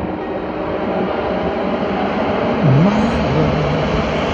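Low-flying Canadair amphibious water-bomber aircraft over a river, their turboprop engines making a loud, steady rumbling drone. The drone's pitch dips and comes back up about three quarters of the way in.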